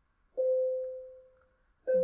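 A single clear, chime-like musical note starts about a third of a second in, rings and fades away over about a second. The same note sounds again near the end.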